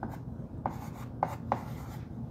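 Chalk writing on a blackboard: a few short, sharp chalk strokes and taps as figures are written.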